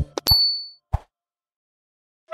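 Cartoon sound effect of an on-screen subscribe button being clicked: a quick click and a bright, high ding that rings out for about half a second, then a short soft thump just under a second in.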